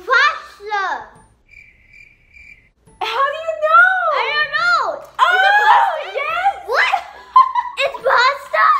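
A young girl's high-pitched excited squeals and laughter in swooping bursts: a short burst at the start, then a long run of squealing and laughing through the second half.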